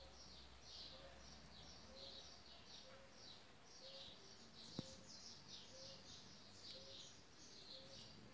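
Near silence with faint, high chirping in the background, repeated two or three times a second, and one faint click about halfway through.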